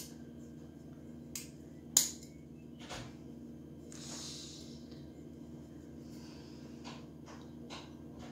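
Small handling sounds of placing window clings on a glass bottle: a few sharp clicks and taps, the loudest about two seconds in, and a brief soft rustle around four seconds in, over a steady low background hum.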